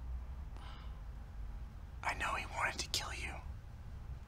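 A person whispering briefly, about two seconds in, over a low steady hum.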